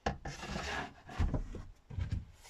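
Seat cushions being dragged and shifted on a wooden seat frame: a sudden scrape, about a second of rubbing, then a few low knocks.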